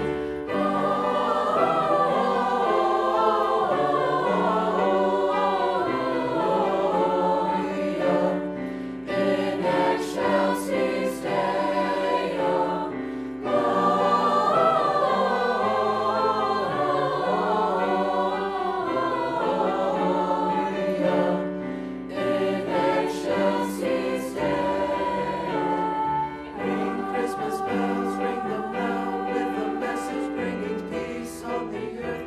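Mixed-voice school choir singing, with held notes in several parts. The singing breaks briefly between phrases about nine, thirteen and twenty-two seconds in.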